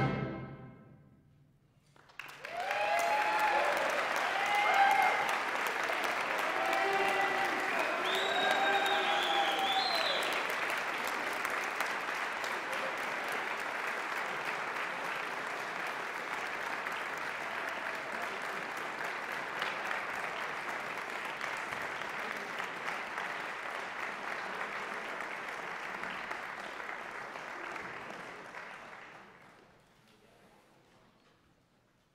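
A concert band's final chord dies away at the very start, then after a short hush the audience applauds, with a few whoops in the first several seconds. The applause fades out near the end.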